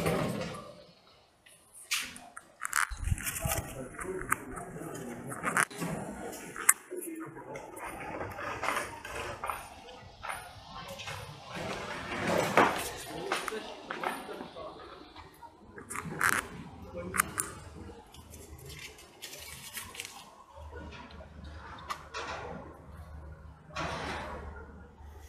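A pile of paper letters burning in a metal bowl, with irregular crackles and the rustle and crumple of sheets being handled and fed to the fire.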